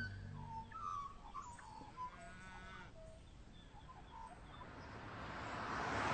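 Scattered short bird calls, including one quick run of repeated notes about two seconds in. A rush of noise swells towards the end.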